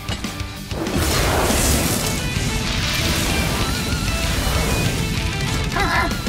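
Cartoon battle sound effects: a sudden loud crash about a second in that carries on as a long rush of noise, over action background music.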